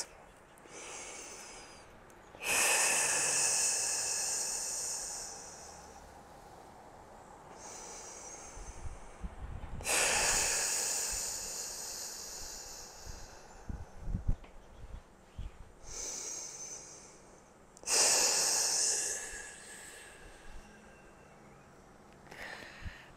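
A woman's deep core-activation breathing: three transverse-abdominis activation breaths, each a long exhale that starts loud and fades over about three seconds, with quieter inhales between.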